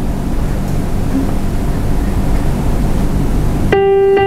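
Steady background noise with a low hum for most of the time. Near the end, an electronic keyboard sounds a single held note as the music begins.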